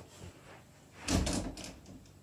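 A single dull thump with a brief rumble about a second in, against faint room tone.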